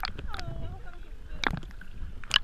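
Seawater sloshing and slapping against a camera held at the water's surface, with a low rumble of water on the microphone and sharp splashes right at the start, about half a second in and, loudest, about a second and a half in.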